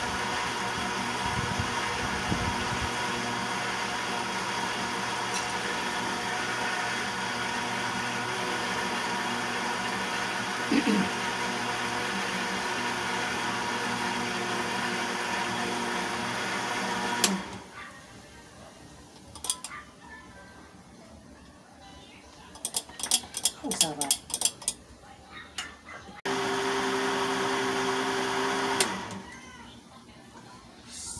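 Electric countertop blender running steadily as it purées a liquid banana mixture, then switched off abruptly about two-thirds of the way through. A few light clicks and taps follow, then a short second burst of blending of about two seconds near the end.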